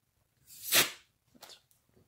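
A person sneezing once, loud and abrupt, peaking a little under a second in, followed by a softer breathy sound.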